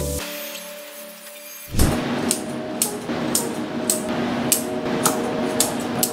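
Background music fades out, then grooming scissors snip the hair around a dog's paw, short sharp snips about two a second over a steady hum.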